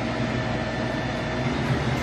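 Steady low hum and hiss of a convenience store's air-conditioning and refrigeration, with a faint thin tone on top that fades out about a second and a half in.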